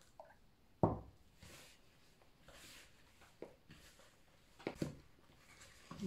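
Hands kneading and squishing pie dough of flour, butter and cold water in a plastic bowl: soft, quiet scrunching sounds, with one sharp thump about a second in and a couple of light knocks a little before the end.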